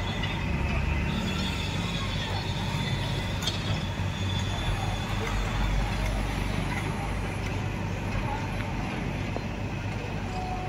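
Steady low rumble of working heavy machinery engines under the chatter of a crowd of voices.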